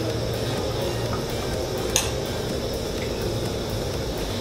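Fish curry simmering in a steel kadai on the stove, a steady low noise, with one sharp metallic click about halfway through as a steel ladle touches the pan.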